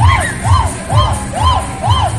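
Loud dance music from the party train's sound system: a steady kick drum about twice a second under a repeated rising-and-falling note, with a crowd of riders cheering and shouting along.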